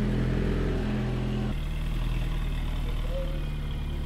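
Alpine A110's 1.8-litre turbocharged four-cylinder engine idling steadily, its note changing about one and a half seconds in and then holding even.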